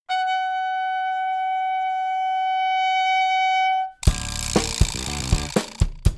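A trumpet holds one long high note for about four seconds, swelling slightly, then stops. Right after, a drum kit comes in with sharp hits over full band music.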